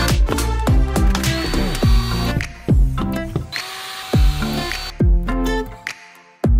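Music with a steady beat, over which a cordless drill runs twice, each time for about a second, drilling into the wall.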